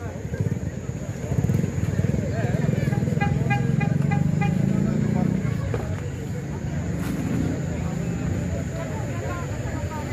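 A motor vehicle's engine running as it passes along the street, building from about a second in, loudest around the middle, then easing off.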